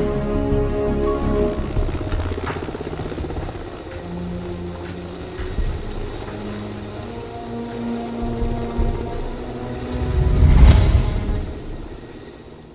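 Cinematic score with a helicopter's rotor chop running beneath it. The music fades within the first few seconds, and a deep rumbling swell builds to a loud peak near the end, then dies away.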